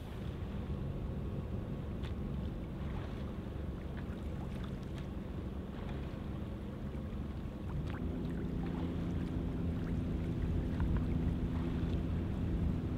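Motorboat engine running steadily with a low hum, its tone stepping slightly higher and louder about eight seconds in, under water and wind noise.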